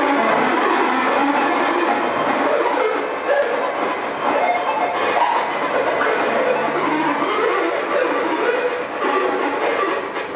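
Loud, continuous electronic noise music (breakcore/noise) from a live DJ set, a dense unbroken wall of sound through the venue's sound system.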